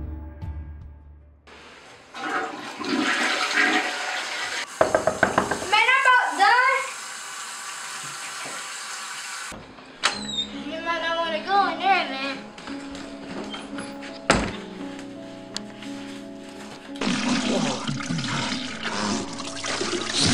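Toilet flushing, the water rushing in stretches that start and stop abruptly.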